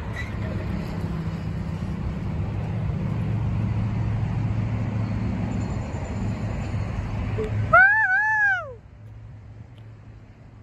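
Low, steady rumble of a freight train receding down the track, which cuts off abruptly about eight seconds in. Right at the cut-off a man lets out a falsetto "woo" that rises and falls twice over about a second.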